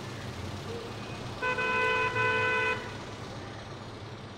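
Car horn sounding two toots in quick succession, about a second and a half in, over steady road and traffic noise.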